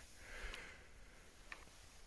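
Near silence, with a faint soft hiss about half a second in and a tiny click about a second and a half in.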